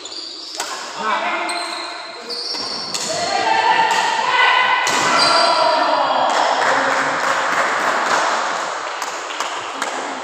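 Badminton rally: sharp racket hits on the shuttlecock and shoes squeaking on the court. About three seconds in come shouting voices, then crowd cheering from about six seconds in.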